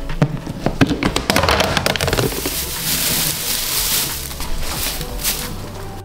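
Dry timothy hay rustling as it is handled and heaped into a plastic bin: a dense run of small crisp crackles, fullest in the middle seconds. Soft background music runs underneath.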